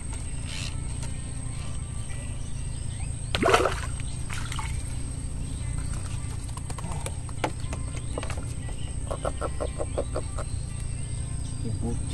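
Water splashing as a fish is hauled out of the river on a bamboo pole, loudest about three and a half seconds in. Under it runs a steady low hum with quiet background music, and a quick run of light taps comes near the end.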